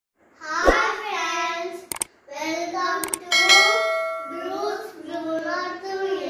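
Young children's voices singing a Tamil rhyme in short phrases. Sharp clicks come in between the phrases, and a bell-like ring sounds for about a second partway through.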